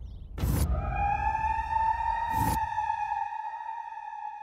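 Dramatic film-score stinger. A deep hit lands about half a second in, then a sustained synth tone slides up and holds, with a second hit about two and a half seconds in.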